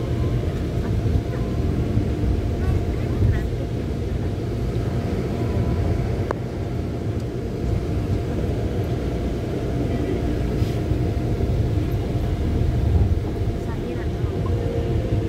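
Steady low rumble of a moving vehicle, engine and road noise running evenly, with a faint steady hum above it.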